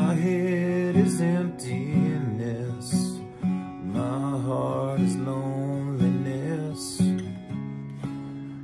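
Steel-string acoustic guitar playing a slow folk accompaniment, with a man's voice singing long, wavering held notes over it.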